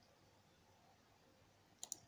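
Near silence, then two quick, sharp clicks close together near the end: a laptop's pointer button clicked to step the program forward one draw.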